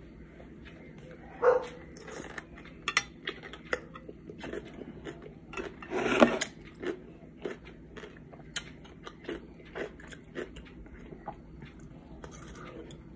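Close-up crunching and wet chewing of a kosher dill pickle: many short crisp crackles, with a louder crunch about six seconds in.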